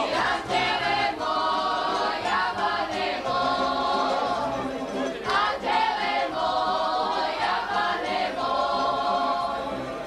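A group of women singing a folk song together in full voice, accompanied by a tamburica string band with bass notes stepping underneath.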